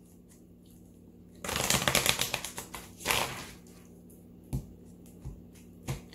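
A deck of tarot cards being shuffled: a dense run of rapid card flicks lasting about a second, a shorter run soon after, then a few soft knocks near the end as the deck or cards meet the table.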